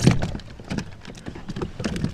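Irregular knocks and taps of hands and gear against a plastic fishing kayak while a small bass that has just been landed is handled, with one louder knock at the start.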